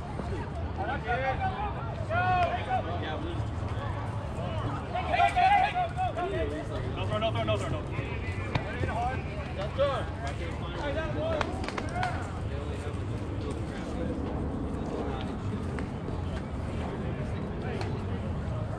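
Players and spectators calling out and chatting across a softball field, with no clear words. The calls are loudest around five seconds in and thin out after about twelve seconds, over a steady low background rumble.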